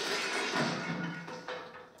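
A sudden crash as a metal footlocker lid is thrown open, ringing on and fading out over about a second and a half.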